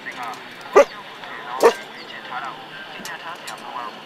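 A dog barking twice, about a second apart, over a busy background of short chirping calls.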